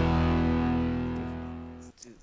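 Opening theme music ending on a held, distorted guitar chord that fades out and then cuts off abruptly just before the end.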